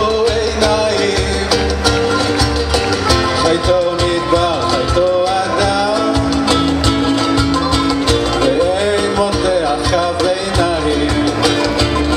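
Live band music in an instrumental passage: strummed acoustic guitars over bass and percussion in a steady rhythm, with a lead melody that bends in pitch.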